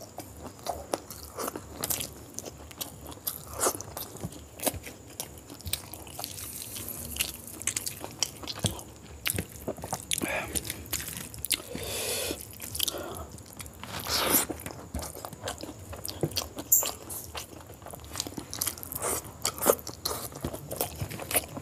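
Close-miked eating by hand: wet chewing and lip-smacking of mouthfuls of curried chicken and egg, with many short irregular mouth clicks and a few longer wet mouth sounds midway.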